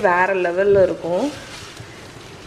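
A woman speaks for a little over the first second. Under and after her voice, softened sliced onions sizzle in oil in a stainless-steel kadai as a wooden spatula stirs them, and the sizzle carries on alone once she stops.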